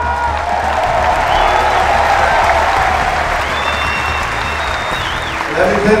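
Large stadium crowd applauding and cheering, with a few high whistles sounding through the noise. The speaker's voice over the public-address system comes back right at the end.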